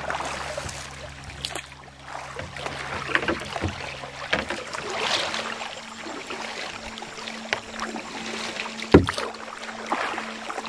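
Kayak paddles dipping and splashing in a shallow, riffled stream, with water running past the hull and a sharp knock about nine seconds in.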